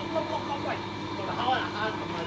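Indistinct background talk from several people, over a steady hum.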